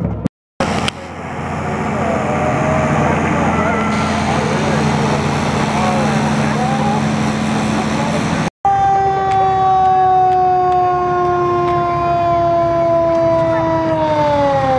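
A John Deere farm tractor's engine running steadily as it drives past, with crowd voices over it. After a cut, a fire truck's siren sounds one long tone that slowly falls in pitch.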